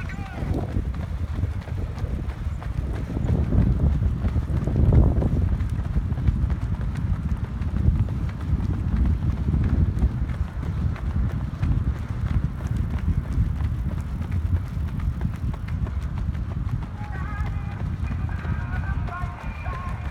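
Footfalls of a small pack of runners striding together on a rubberised track at mile-race pace, a quick continuous patter under a heavy low rumble.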